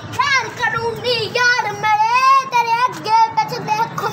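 A child singing in a high voice, the notes wavering with a fast vibrato and broken into short phrases.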